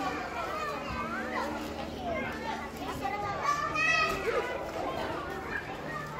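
Many children's voices overlapping in indistinct chatter and calls, with one child's high call rising about three and a half seconds in, the loudest moment, over a faint steady low hum.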